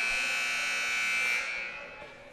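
Electronic gym buzzer sounding one steady, buzzing tone that fades out about a second and a half in.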